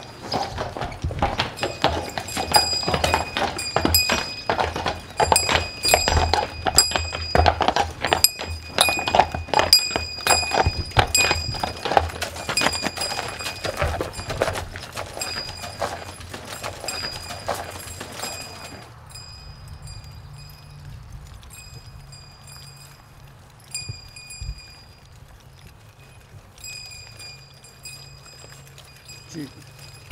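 Hooves of a three-horse team of Percheron draft horses clopping on concrete and gravel as they are led out of the barn, a dense run of uneven hoofbeats. About nineteen seconds in the hoofbeats drop away suddenly and it goes much quieter.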